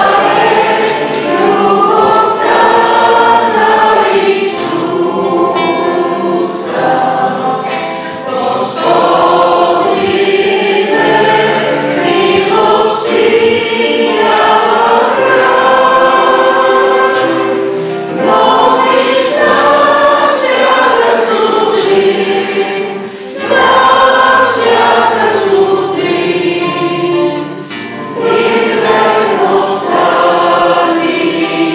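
A group of men and women singing a Bulgarian worship hymn together, accompanied by acoustic guitar and keyboard, in sung phrases with short breaths between them.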